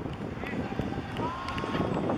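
Footballers' voices shouting and calling across an outdoor pitch as a goal is celebrated, with one long drawn-out call in the second half.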